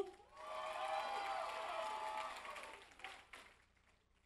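Audience applauding with some cheering voices, fading away about three and a half seconds in.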